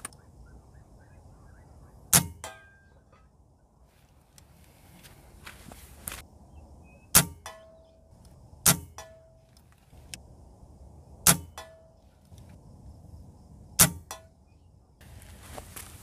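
Benjamin Marauder .177 pre-charged pneumatic air rifle firing five shots a few seconds apart, each a sharp crack, with fainter clicks and brief ringing after some of them.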